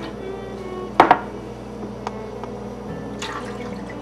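Red wine and beef broth being poured from drinking glasses into a glass mixing bowl, with a sharp double clink of glass about a second in.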